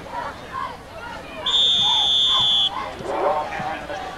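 A referee's whistle sounds one steady, high blast of about a second, over crowd murmur.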